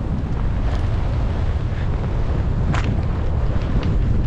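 Wind rushing over a helmet camera's microphone while skiing downhill through powder snow: a steady, loud rumble, with a few faint clicks.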